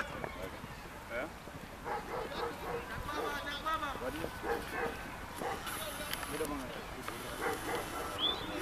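Footballers' distant shouts and calls, many short overlapping voices during play.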